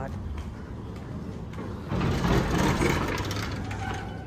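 Ambience inside a busy large store: a steady low hum with indistinct background voices, swelling louder about halfway through.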